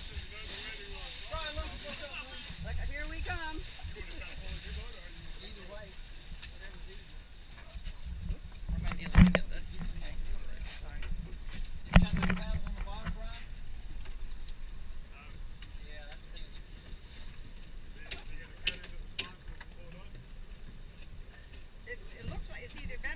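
Two loud knocks about three seconds apart, midway through, as a kayak is hauled up over a boat's stern and bumps against the hull. They sit over a steady low rumble of wind and water and faint voices.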